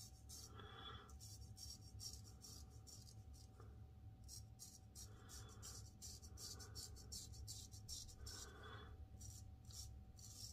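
Savile Row straight razor scraping through lathered stubble, a faint crisp rasp in short strokes that come in quick runs, over a steady low hum.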